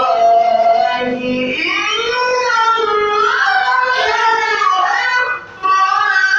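A man chanting a Maulid devotional poem in Arabic into a microphone, a single melodic voice drawn out in long gliding notes, with a short break about five and a half seconds in.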